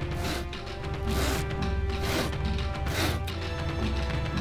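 Background music with held tones, with four short rushing hit sound effects about a second apart.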